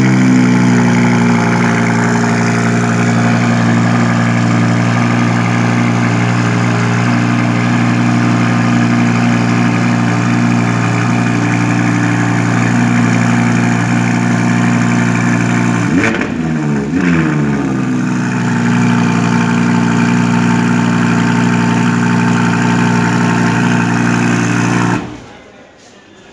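Audi R8 V10 Plus's 5.2-litre V10 falling from its start-up flare and settling into a steady idle. About sixteen seconds in there is one brief rise and fall in engine speed. Near the end the engine is switched off and the sound cuts off suddenly.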